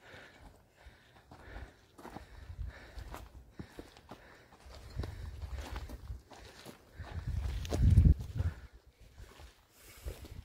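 Footsteps on a stony mountain path, a scatter of short crunches and scuffs, with low rumbling swells close to the microphone that are loudest about eight seconds in.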